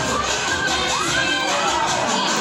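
Children shouting and cheering over the babble of a crowded room, with one voice rising in pitch about a second in.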